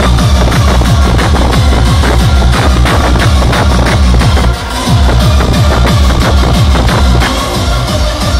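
Hardcore techno played loud over a festival sound system and heard from within the crowd: a fast, heavy kick drum drives the track, dropping out briefly about four and a half seconds in before the beat comes back.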